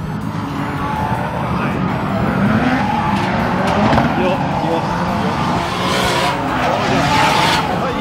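Drift cars on the course, engines revving up and down and tyres squealing. The tyre noise grows louder about six seconds in.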